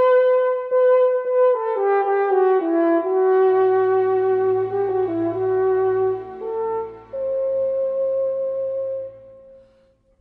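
French horn playing a slow solo phrase. It opens on a held note, steps down through a falling line, and after two short breaks settles on a long held note that dies away near the end.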